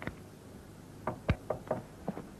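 Knocking on a door: four quick raps in the second half, about a fifth of a second apart.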